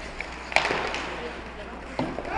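Ice hockey play right after a faceoff: skate blades scraping on the ice, with one sharp clack of a stick on the puck or another stick about half a second in.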